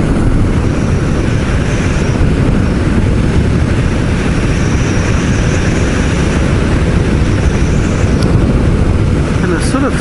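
Steady wind rush and engine drone of a Honda CBR1000F motorcycle cruising at about 100 km/h, heard through a microphone inside the rider's helmet. The low rumble stays even throughout.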